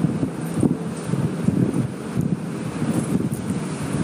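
Steady, fairly loud rumbling noise on the lecture microphone, wind-like and without any clear tone or rhythm.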